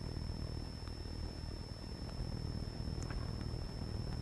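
Lecture-hall room tone: a steady low hum with a thin, steady high-pitched whine running through it, and a faint click about three seconds in.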